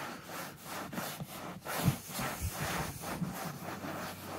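A cloth rubbing back and forth over a seat cover's upholstery in quick, repeated wiping strokes. The cloth is damp with WD-40 and is wiping wax marker lines off the new cover.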